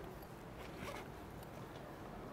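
Zipper on a small case being pulled open, faint, with a short zip about a second in.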